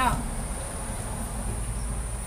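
A steady high-pitched drone over a low background rumble, with the tail of a woman's word at the very start.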